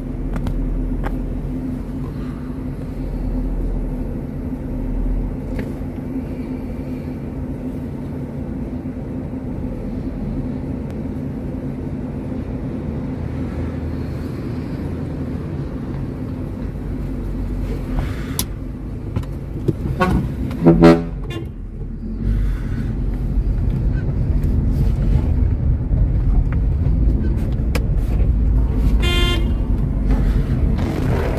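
Vehicle engines running steadily. About two-thirds of the way through, a car horn gives two quick loud toots, and a horn sounds again briefly near the end. The horns warn oncoming traffic at a narrow single-lane tunnel.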